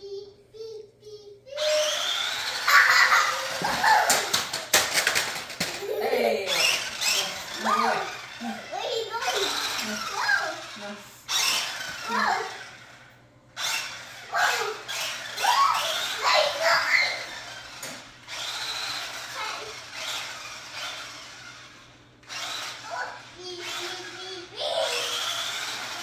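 A remote-control toy car's small electric motor whirring as it drives across a wooden floor in spurts, stopping briefly now and then. A young child squeals and babbles over it.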